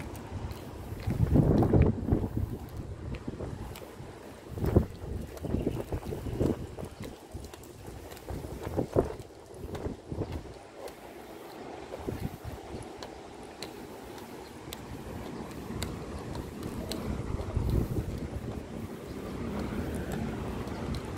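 Wind buffeting the camera microphone in uneven gusts, the strongest about a second or two in, over a steady outdoor background noise.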